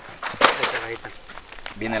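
A short rustle of packaging being handled about half a second in, as a box of fishing gear is unpacked, with voices.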